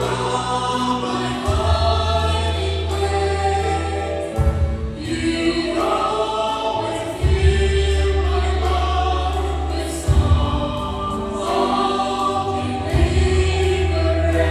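A church worship team of several singers singing a hymn into microphones through the PA, over slow held bass chords that change every few seconds.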